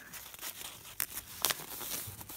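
A sheet of paper being folded and creased by hand, with a few sharp paper crackles, the clearest about one second and one and a half seconds in.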